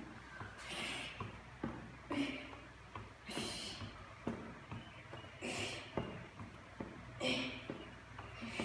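A woman breathing hard from exertion: sharp, forceful exhales about every one and a half seconds, with a few soft knocks between them.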